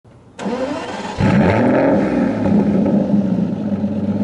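A car engine starting: a quieter lead-in about half a second in, then the engine catches and revs up a little over a second in and holds at a steady speed.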